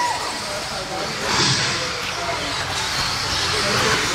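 Electric 1/10 2wd RC buggies racing on an indoor dirt track: a high-pitched motor and tyre whir that swells about a second and a half in as cars pass, over the echoing noise of the hall.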